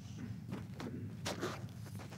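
Soft handling noises: about five short rustles and light knocks spread through two seconds, as a seated person moves a basket, cloth and a pair of glasses about.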